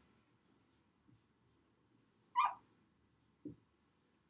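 A dry-erase marker squeaks once, briefly and sharply, on a whiteboard as a figure is written. A soft low thump follows about a second later.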